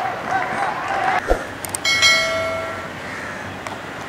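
Voices in the first second, then a sharp knock, then a sudden strike about halfway through. After the strike a metallic ringing tone with several overtones fades away over a second or so.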